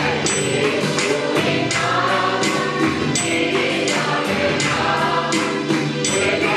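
Male voices singing a Christian worship song together into microphones, with amplified accompaniment and a steady percussive beat.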